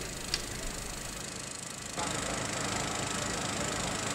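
Steady background hum and noise, which shifts abruptly to a slightly louder, different hum about two seconds in.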